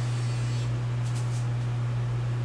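Steady low electrical hum, with a faint hiss above it.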